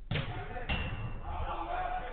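Two thuds of a football being struck, about half a second apart, followed by a player's voice calling out loudly.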